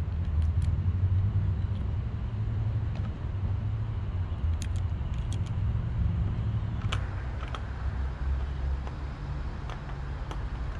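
Scattered light metallic clicks and clinks of outboard carburetor parts being handled and fitted by hand, over a steady low rumble.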